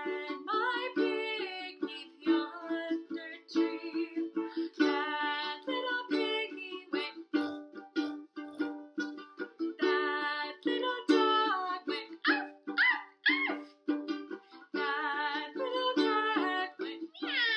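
A woman singing a children's song while strumming chords on a Makala ukulele, with a few short swooping vocal calls about three quarters of the way through that imitate farm-animal sounds.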